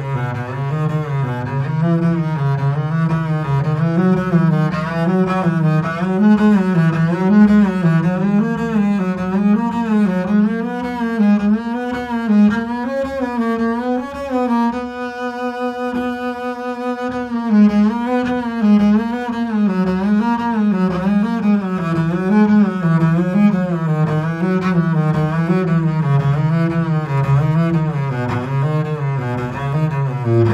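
Double bass played with the bow in the lower octave, running quick three-note scale patterns that climb step by step. Past the middle one note is held for about two seconds, then the patterns step back down.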